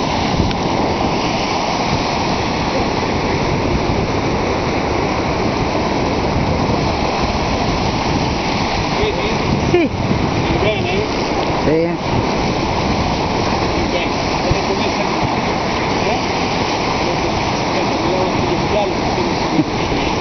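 Sea waves breaking and washing against a rocky shore: a steady, loud rush of surf.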